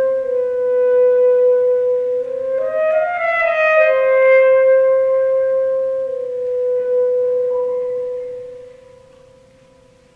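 Alto saxophone playing slow, long-held notes in a free-tempo classical passage, with a brief quicker figure that rises and falls about three seconds in. A low piano note is held quietly underneath. The last saxophone note fades out about nine seconds in.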